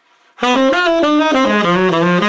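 Tenor saxophone playing a quick jazz line of eighth notes, starting about half a second in. The line steps down to its lowest notes in the middle and climbs back up, with each note tongued as part of an articulation demonstration.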